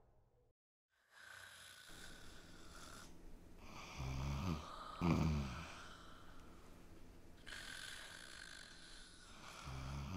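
A person asleep and snoring: after a second of silence, two loud snores about four and five seconds in, and another near the end.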